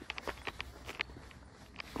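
Footsteps on dry dirt and twigs: a string of light, irregular crunches and clicks.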